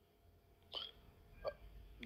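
A quiet pause in a man's talk, broken by two brief, faint vocal noises about three-quarters of a second apart.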